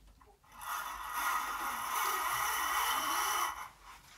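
A fabric curtain being drawn open, scraping along its rail for about three seconds.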